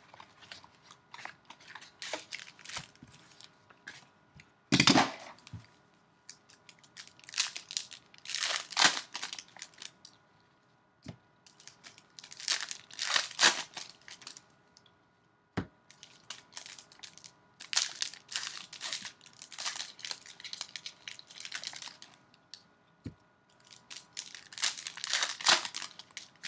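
Foil wrappers of Bowman Chrome baseball card packs being torn open and crinkled by gloved hands, in irregular bursts of rustling with short quieter gaps between.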